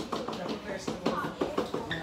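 Quiet, indistinct talking in a small room, softer than the speech around it.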